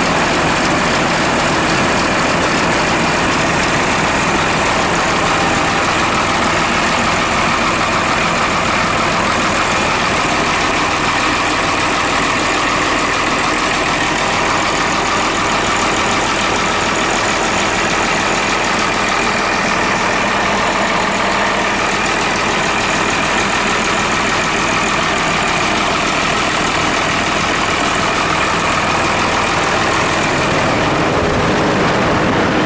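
Komatsu WA320 wheel loader's diesel engine idling steadily, heard up close with the engine side panel open, still warming up after a cold morning start.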